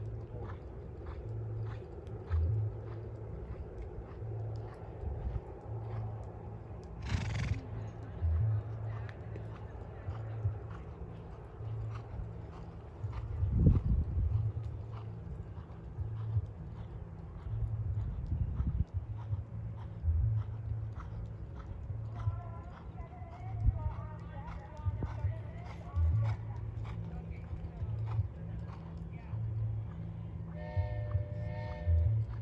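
Horse working in a sand dressage arena: hoofbeats come through as soft, uneven low thuds, with a short hiss about seven seconds in and a louder thud around fourteen seconds.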